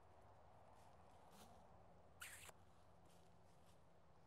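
Near silence: faint outdoor background, broken by one brief noise about halfway through.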